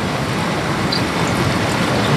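Steady splashing of a public drinking fountain's water jet falling back into its small basin.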